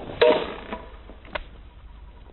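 Softball bat striking a tossed ball: one sharp crack with a short metallic ring, followed a second later by a lighter click.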